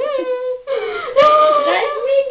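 A high-pitched voice whimpering without words in drawn-out, wavering whines, breaking off briefly about two-thirds of a second in, then going on; a playful mock baby cry.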